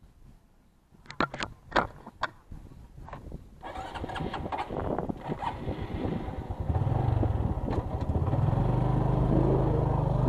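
A few sharp knocks and clicks, then a motorcycle engine starts and runs, getting louder as the bike pulls away and gathers speed.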